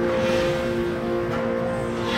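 Gas fire tower shooting a burst of flame: a roaring whoosh that fades within about a second, over background music with long held tones.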